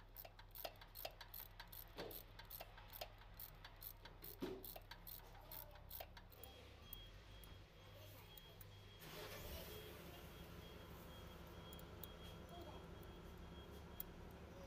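Ratchet wrench clicking in quick strokes as a bolt on the truck's air compressor head is turned; the clicking stops about six seconds in, and a faint steady hum comes up a few seconds later.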